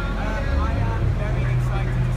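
A person's voice over a steady low hum.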